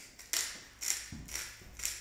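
Salt being shaken from a shaker into a small stainless-steel mixing bowl: four quick shakes about half a second apart, each a short rattle of grains.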